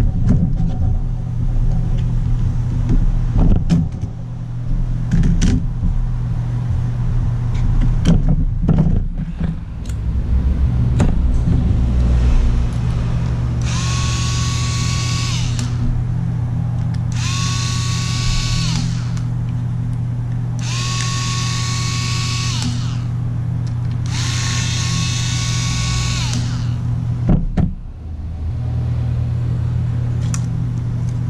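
Cordless electric screwdriver running in four bursts of about two seconds each, starting about halfway through, each a steady motor whine that rises at the start and falls at the end as it backs out the screws holding a laptop hard drive in its mounting caddy. Before that come scattered clicks and knocks of handling the plastic bay cover and drive, over a steady low hum.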